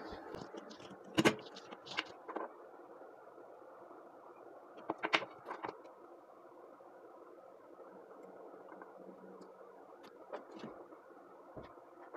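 A few scattered light clicks and taps of small parts being handled as wires are soldered onto a rechargeable battery's terminals, over a steady faint background hum.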